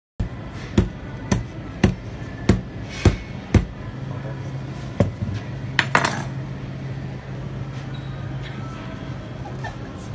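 Rubber mallet striking a cheese knife set on a whole Parmigiano Reggiano wheel: six sharp knocks about half a second apart, then a few more a little later.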